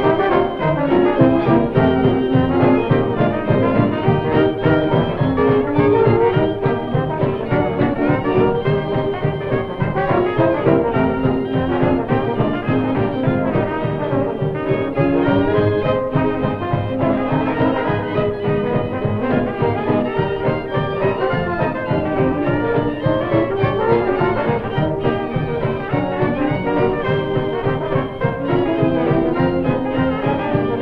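A 1920s dance orchestra playing a dance tune with a steady beat. A cornet carries the lead over trombone, violins, saxophones and banjo. The early sound-film recording has little treble.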